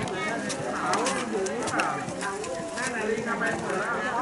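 Several people talking at once, with scattered sharp clicks.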